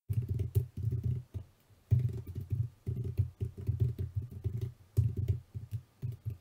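Typing on a computer keyboard: fast runs of keystrokes, pausing briefly about a second and a half in and again near five seconds.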